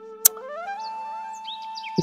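Background music: a flute-like melody holds a low note, then steps up to a higher held note about half a second in. There is a brief sharp click about a quarter second in.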